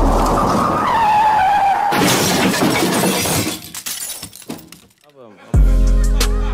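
A hip-hop beat cuts out and a crowd shouts in reaction. About two seconds in, a loud noisy crash fades out over a second or so, and near the end a hip-hop beat with heavy bass starts up again.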